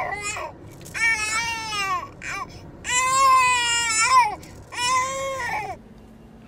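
A baby crying: four long wailing cries with short gaps between them, cut off abruptly near the end.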